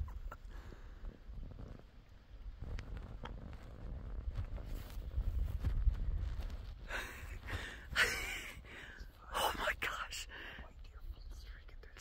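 Hushed whispered voices, two short whispered phrases in the second half, over a low rumble on the microphone.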